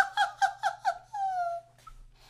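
A man's high-pitched laughter: four short rising-and-falling whoops in quick succession, then one longer one that falls in pitch and breaks off before the end.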